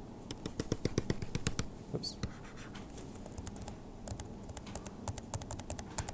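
Quick runs of light clicks and taps at a computer: one run of about a second just after the start, and a longer one in the second half.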